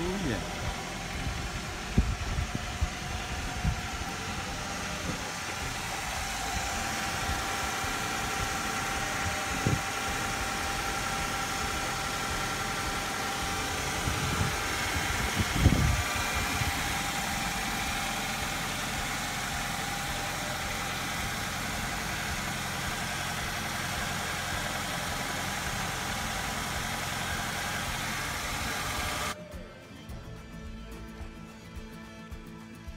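1997 Suzuki Sidekick four-door idling steadily, with a few low thumps along the way.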